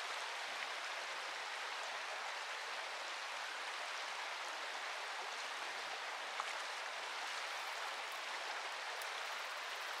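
Shallow, clear stream running steadily over a gravel and cobble bed, an even rush of moving water with no change through the whole stretch.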